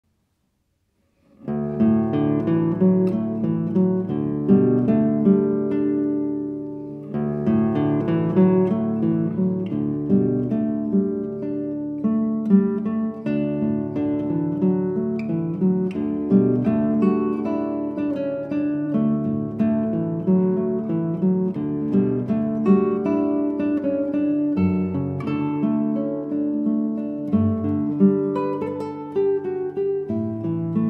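Acoustic guitar playing a slow plucked melody over chords, coming in about a second and a half in, with a short pause about seven seconds in.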